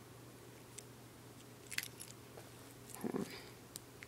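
Faint, scattered clicks and crackles of objects being handled, with a brief low murmur about three seconds in.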